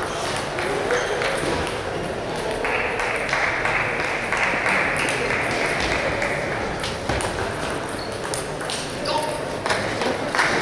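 Table tennis ball clicking off bats and table in quick exchanges during a rally, with background voices. A steady hiss runs through the middle few seconds.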